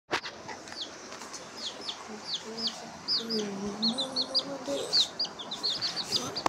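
Domestic chicks peeping: a run of short, high, falling peeps, about two a second at first and coming faster in the second half.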